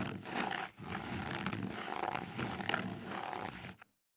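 Added ASMR sound effect of a tool scraping and picking at skin. It starts suddenly, breaks off briefly under a second in, and cuts off just before the end.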